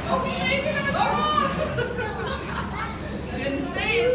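Children's high-pitched voices chattering and squealing, with no clear words.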